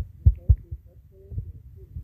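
A few dull, low thumps, two close together early and a softer one later: fingers tapping a phone's touchscreen while typing, picked up through the phone's body by its microphone.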